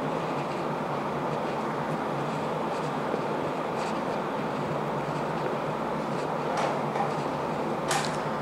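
Steady hiss of room background noise, with a few faint short ticks.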